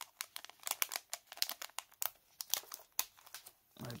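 Clear plastic packaging bag crinkling and crackling in a run of irregular sharp crackles as hands handle and open it. The crackling stops just before the end.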